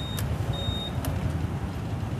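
A short high electronic beep from a Honda SH scooter's smart-key ignition as it is switched on, with a click just before and another just after. A steady low rumble runs underneath.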